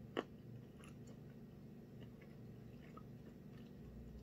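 Faint chewing of a soft-baked keto cookie, with small wet mouth clicks. One sharper click comes just after the start.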